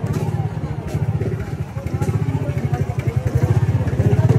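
Motorcycle engine running close by with a fast, even putter, amid crowd voices.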